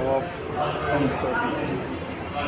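Speech only: voices talking, with no other distinct sound.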